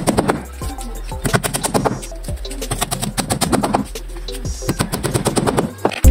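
Rapid, irregular tapping and chipping of a small metal hand tool working the edge of a plywood boat plank, many light strikes a second, over background music.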